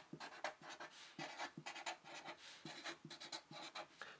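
Faint scratching of a felt-tip marker on paper, a quick run of short strokes as letters are written out.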